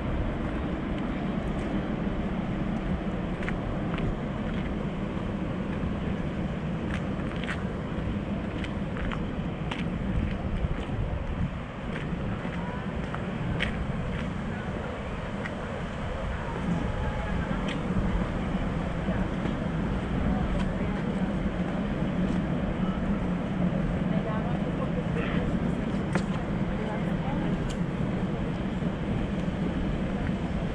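Steady outdoor city ambience: traffic noise with people's voices in the background, and a few faint scattered ticks.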